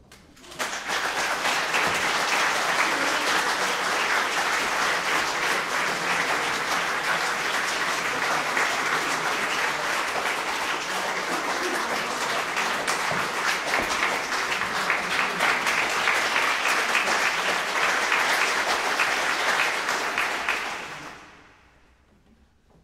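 Audience applauding: dense, steady clapping that starts about half a second in and dies away near the end.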